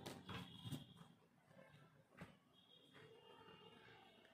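Near silence, with a few faint soft clicks and slides of tarot cards being handled and drawn from a deck.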